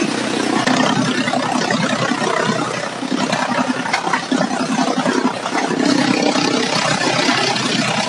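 A small engine-driven chopping machine runs while bundles of leafy stalks are fed into it. A steady engine hum, its pitch bands coming and going every second or so, sits under a dense, loud noise of cutting.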